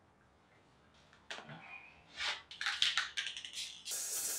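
Soft handling noises from putting on safety glasses and a respirator mask: a click, then a run of quick small clicks and rustles. An aerosol spray-paint can starts hissing at the very end.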